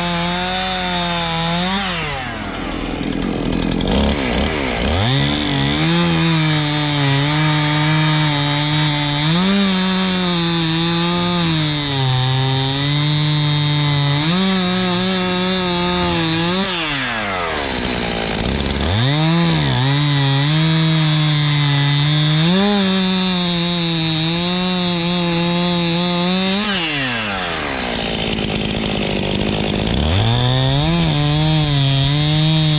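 Two-stroke Stihl chainsaw cutting through a cherry log at full throttle, its pitch wavering as the chain works through the wood. Three times the throttle is let off: the engine drops to idle and revs back up into the next cut.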